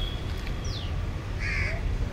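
Birds calling outdoors: a short high falling whistle, then a harsh caw-like call about one and a half seconds in, over a steady low background rumble.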